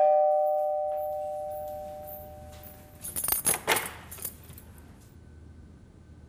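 Two-note chime, a higher note then a lower one, ringing out and fading over about three seconds, like a ding-dong doorbell. About a second of light rattling follows in the middle.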